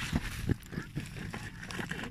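Low rumble of wind on a phone microphone, with a few soft knocks and scuffs as the phone is moved about.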